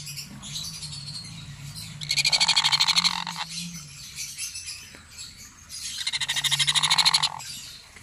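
Sun conure chick giving rapid, rattling begging calls in two bouts of about a second and a half each, the second growing louder. A faint steady low hum runs underneath.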